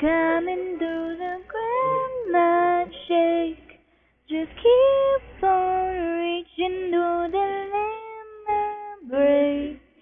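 A young female voice singing a song unaccompanied, with a short break about four seconds in and another near the end. The sound is thin, with no high end, as from a computer's built-in microphone.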